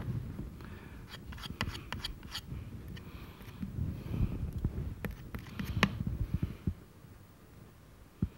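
Brush and palette knife working thick oil paint on a canvas: soft scraping, dabbing and rustling, with a cluster of sharp clicks around two seconds in and another near six seconds.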